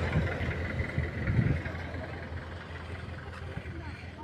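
Wind buffeting a phone's microphone: a low rumble that gusts unevenly for the first second and a half, then settles to a steadier blow.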